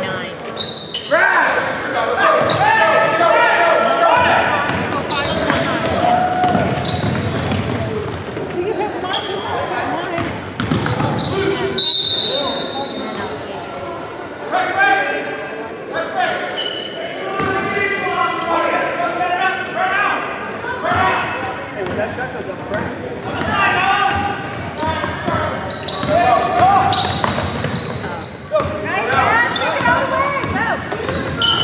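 Basketball game in a gym: a ball bouncing on the hardwood floor with sharp knocks, amid shouting voices from players and spectators, all echoing in a large hall.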